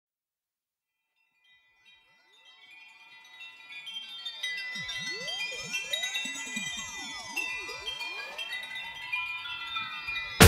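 Song intro of many high, chime-like tinkling notes, fading in from silence over the first few seconds, with a slow swirling sweep running through them.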